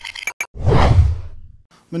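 Whoosh sound effect of a news channel's logo sting: a few quick clicks, then one noisy swell about a second long that fades out. A man's voice starts right at the end.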